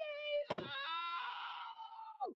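A woman's long, drawn-out theatrical wail of dismay, acting out an emotional exclamation. It steps up in pitch about a second in and falls away at the end, with a single sharp knock about half a second in.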